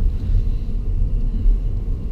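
Steady low rumble of a Holden Commodore's engine and road noise, heard from inside the cabin while driving.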